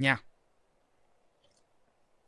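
A man's voice says one short word at the start, then near silence: room tone with a faint click about one and a half seconds in.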